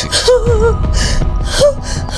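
A woman sobbing, with gasping breaths and two short wavering cries, over a film's background music.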